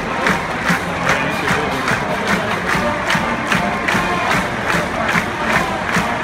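A large college marching band playing, with sharp drum and cymbal beats at a steady march pace of about two and a half a second, over a cheering stadium crowd.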